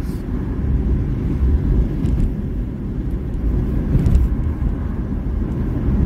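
Car engine idling, heard from inside the cabin as a steady low rumble.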